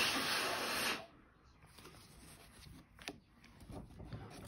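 A rush of noise lasting about a second at the start, then faint paper handling with a light click about three seconds in, as a hand rubs and handles a paper scratch-off lottery ticket on a table.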